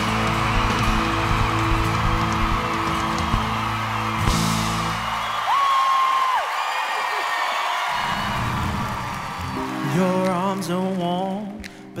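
A live band holds the last chord of a rock ballad under a studio audience cheering and applauding. The music stops about halfway through, a long whistle rings out from the crowd while the cheering goes on, and then a new slow song's soft instrumental intro begins.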